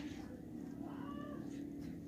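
A faint, short animal call with a gliding pitch about a second in, over a steady low hum.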